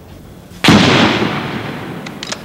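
A single loud blast about two-thirds of a second in, dying away slowly over the next second and a half.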